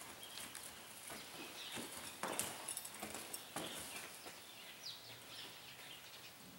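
Hooves of a palomino gelding striking and scuffing in deep arena sand under a rider as it moves and comes to a stop, with a few sharper strikes in the middle.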